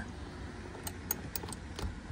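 A few faint, spaced clicks from a hand ratchet and Torx bit turning the screws that hold a mass airflow sensor in its plastic airbox housing, over a low steady rumble.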